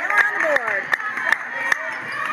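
Basketball being dribbled on a hardwood gym floor, sharp knocks roughly every half second, with spectators' voices echoing in the gym.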